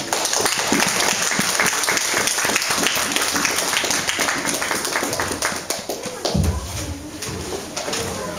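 A congregation clapping in applause, the claps thinning out after about six seconds. A low steady tone comes in near the end.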